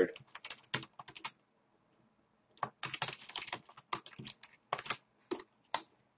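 Typing on a computer keyboard: a quick run of keystrokes, a pause of over a second, then another run of keystrokes.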